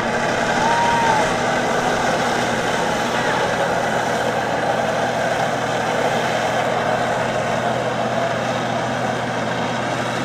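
Personal watercraft engine running steadily under load to power a flyboard, with the rush of water forced out through the board's jets. The noise is loud and even throughout.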